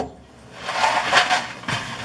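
Clicks and knocks of a microwave door being handled and swung open, with handling noise between them.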